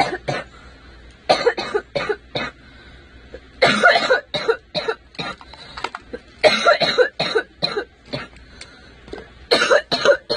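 A young woman coughing in about four bouts of several harsh coughs each. It is a lingering cough from an illness of more than two weeks that has not cleared after antibiotics.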